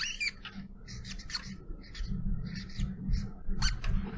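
Short, squeaky strokes of writing on a board, scattered through the pause, over a low steady hum.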